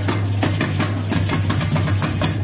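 Samba bateria drums playing a loud, sustained roll: a steady low rumble of bass drums under dense rapid strokes on snare and small drums, in place of the regular beat.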